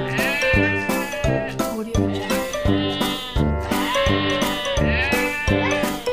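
A goat bleating four times, in short wavering calls, over background music with a steady beat.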